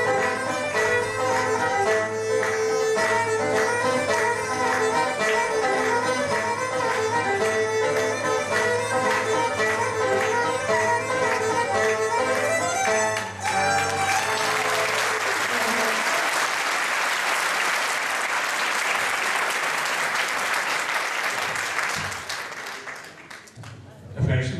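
Live Greek island folk dance music played on a long-necked lute and other strings, stopping about 13 seconds in. Audience applause follows and fades out near the end.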